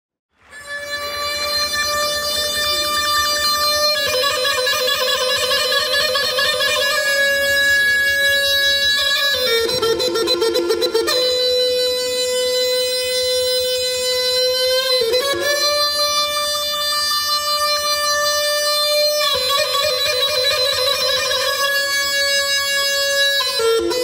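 Neyanban, the Bushehri bagpipe of southern Iran, playing a slow solo melody of long held notes decorated with quick trills, moving to a new note every few seconds.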